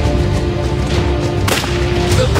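Tense drama score with sustained tones, cut by a single sharp gunshot about one and a half seconds in.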